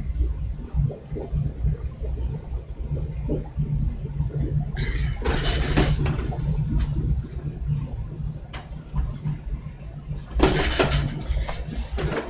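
Household furnace running with a steady low rumble, loud because it is close by. Louder bursts of noise break in about five seconds in and again near the end.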